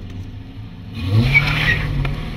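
A car engine starts and revs up about a second in, its pitch rising and then holding steady, with a hiss of noise over it.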